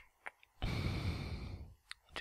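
A man's long audible sigh, an exhaled breath close to the microphone lasting about a second. A few light clicks come just before it and one more near the end.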